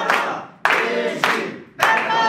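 A group of women singing together while clapping their hands in time, nearly two claps a second.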